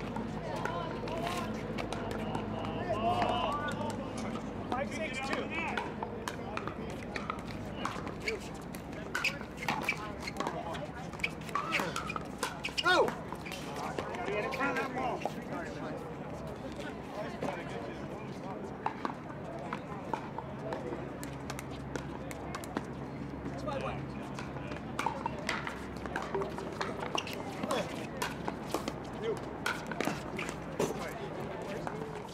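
Pickleball paddles striking a hard plastic ball: irregular sharp pops throughout, over voices talking in the background.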